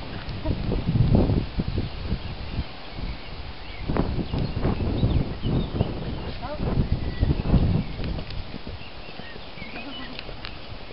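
Horses galloping on grass: irregular, dull hoofbeat thuds on turf that come in bursts as the horses pass.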